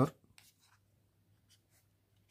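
A few faint, short scratches of a pen and highlighter marker on paper.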